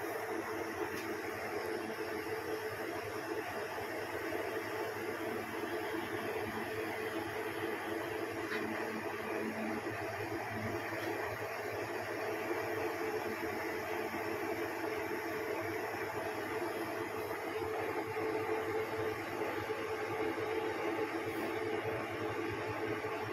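Steady background hum with an even hiss, holding two low steady tones, of a small motor such as an electric fan running in the room; no separate knocks or handling noises stand out.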